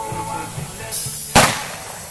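A single pistol shot fired from horseback at a balloon target: one sharp crack a little past halfway, with a short echoing tail.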